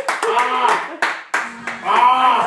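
A small group clapping and cheering: irregular hand claps mixed with whoops and excited voices.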